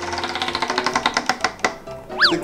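Tabletop prize wheel spinning down: its flapper clicks against the rim pegs, the clicks slowing and spreading out until the wheel stops near the end.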